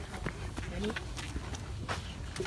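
Footsteps of several people on a dry, gritty dirt path: short irregular crunches and scuffs, with a low rumble of wind on the microphone underneath.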